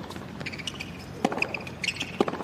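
Tennis ball struck by racket strings in a baseline rally, two hits about a second and a quarter apart, the second the louder, with short squeaks of tennis shoes on the hard court between them.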